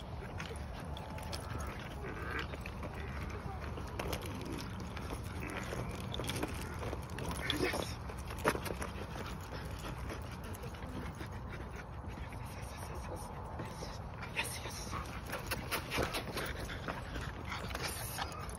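A Belgian Malinois and a French bulldog playing: scattered short dog sounds over a steady low rumble, with a sharp knock about eight and a half seconds in.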